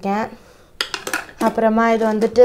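A few quick clinks and clicks, a little under a second in, as metal makeup tools such as scissors and brush ferrules are handled in a brush holder, with a woman talking around them.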